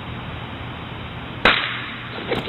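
A single sharp bang about one and a half seconds in, like a firecracker going off, with a short hissing tail after it; before it only a low steady hiss.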